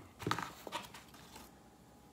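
A few light knocks and clicks from hot sauce bottles and box packaging being handled, all within the first second or so, then a quiet room.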